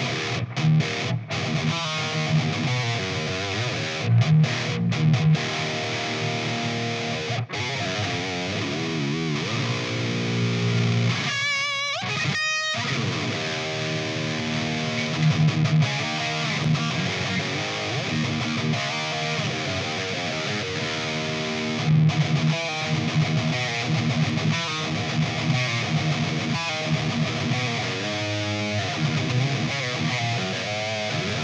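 Ibanez electric guitar played through the Otto Audio 1111 amp-sim plugin, with very high-gain distortion and a little room reverb: heavy metal riffing. About twelve seconds in there is a short break with a wavering high note.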